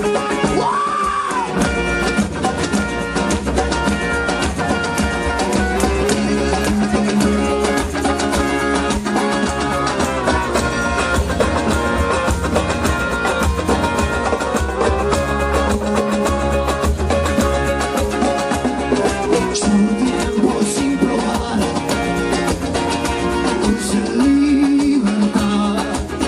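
Live band music in an Andean-rooted rock style: electric guitar and bass over cajón and cymbal, with a steady beat.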